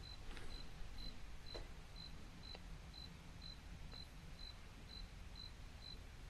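Quiet room tone: a faint low hum, with a short, high-pitched chirp repeating evenly about twice a second and a few soft clicks.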